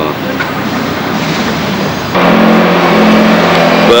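A car doing a burnout, its engine held at high, steady revs while the driven wheels spin. It comes in suddenly about two seconds in, after a rough, even noise.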